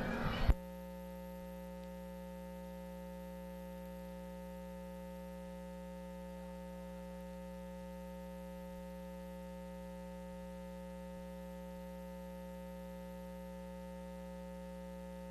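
A steady electrical hum, a stack of unchanging tones with many even overtones, with no room sound at all. It sets in as the speech before it cuts off abruptly about half a second in, and it sounds like mains hum on a dead audio line.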